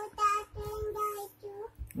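A toddler's high voice singing a few short held notes, with brief breaks between them.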